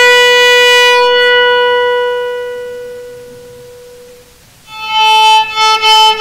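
Electric guitar played with a cello bow: one long sustained note that slowly fades away over about four seconds, then a new bowed note swells in near the end.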